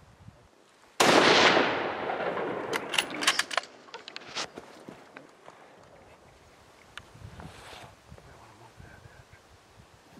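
A single rifle shot from a 6.5 PRC rifle about a second in, its report echoing away over the next two seconds or so. A few sharp clicks follow.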